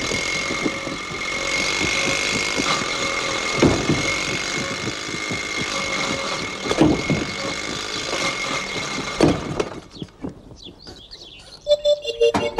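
A small vintage open car's engine running: a steady, noisy drone with a high whine, broken by several thumps. It dies down about ten seconds in.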